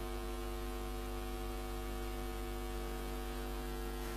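Steady electrical hum with a stack of even overtones, unchanging throughout.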